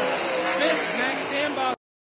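Winged dirt-track sprint car engines running on the track under announcer commentary, the whole sound cutting off abruptly near the end.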